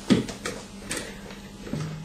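Chair creaking and a few small clicks and knocks as a person turns round on the chair to face a piano. There is a short squeak that falls in pitch at the start.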